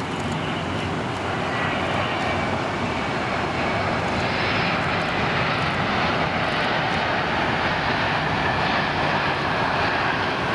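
Jet engines of a twin-engine Boeing 767 airliner running as it rolls out on the runway just after touchdown. The roar swells over the first few seconds, then holds steady.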